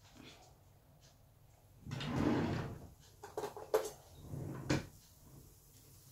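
A kitchen drawer sliding open with a scraping rumble, then a few sharp clicks and knocks as things inside are handled, and a second shorter slide with a knock about three seconds later.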